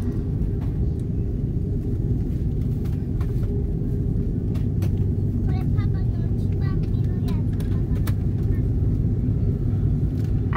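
Steady low rumble and hum of a jet airliner's cabin as the plane taxis slowly, with a few faint clicks and faint voices in the background.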